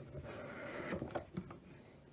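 Cardboard packaging of a trading-card Elite Trainer Box being handled and slid out: a soft rustle in the first second, then a few light clicks and taps.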